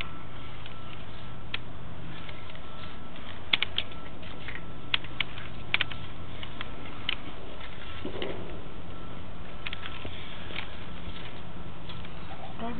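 Sewer inspection camera's push cable being pulled back out of a drain line: a steady hiss and electrical hum, with scattered sharp clicks and taps.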